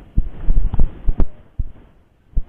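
A run of loud, low thumps and knocks, about six in under two seconds and unevenly spaced, the loudest a little past the middle. They are typical of a body-worn camera's microphone being jostled as its wearer walks.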